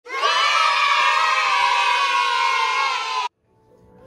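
A group of children's voices shouting and cheering together, cutting off suddenly a little over three seconds in.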